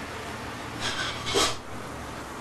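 Two short scraping, rasping noises less than half a second apart, the second louder, over a steady low hum.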